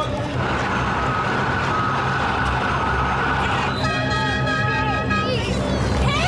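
City street noise with an engine running and an emergency vehicle sounding a steady tone, then a held horn note for about a second and a half, about four seconds in.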